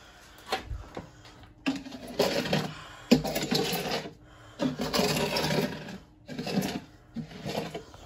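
Irregular bursts of rustling and clatter, about four of them, from objects being handled and moved close to the phone's microphone.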